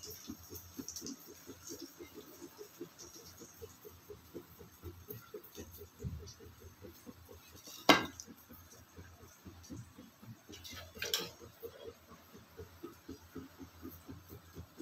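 Malpua frying in a pan of hot oil, a low, irregular crackle of bubbling throughout. A single sharp knock comes about eight seconds in, and a smaller clatter about three seconds later.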